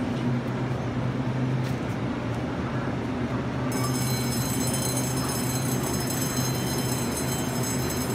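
Taiwan Railway EMU900 electric multiple unit standing at a platform, its onboard equipment giving a steady low hum, joined a little before halfway through by a high steady whine.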